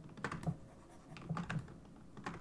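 Quiet, scattered clicks of a computer keyboard and mouse, about half a dozen in two seconds.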